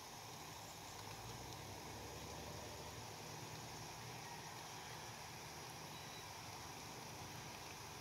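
Faint, steady outdoor background noise: an even hiss with a low hum underneath, unchanging throughout.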